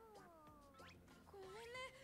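Faint, high-pitched anime character voices speaking Japanese at low volume: a falling drawn-out line near the start, then a held, higher-pitched line in the second half.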